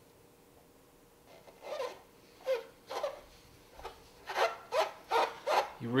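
Fingertips rubbing a die-cut paper sticker down onto the hard plastic hull of a vintage Kenner Slave I toy, burnishing it flat. There are about eight short rubbing strokes, starting a little over a second in and coming faster toward the end.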